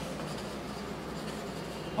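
Hand writing on a paper chart, the writing tip scratching and rubbing faintly across the paper.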